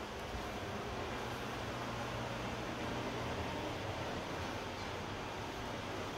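Steady low hum with an even hiss, the running noise of a kitchen oven on its self-cleaning cycle.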